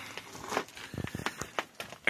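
A run of light clicks and knocks from the flap lever being handled and worked, its stiffness the result of a seized bushing inside the pivot.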